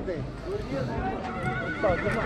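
A horse whinnying, one high call held for about a second starting just past the middle, over people talking.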